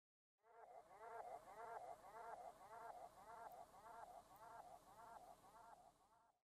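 Faint, short pitched snippet repeating about ten times, nearly twice a second, then dying away near the end: a looped sample from a turntable mix.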